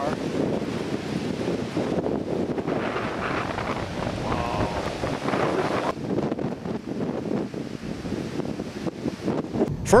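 Strong wind blowing across the microphone, a steady rushing noise that swells and eases in gusts.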